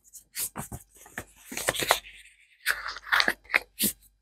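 Paper being handled and fitted into place: irregular crinkling, crackling and scraping in short bursts.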